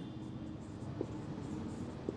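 Marker pen writing on a whiteboard: faint scratching strokes with a small tap about a second in.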